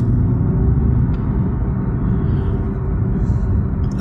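Cabin sound of an Audi RS e-tron GT driving slowly: a steady low hum from the electric drive, mixed with road rumble.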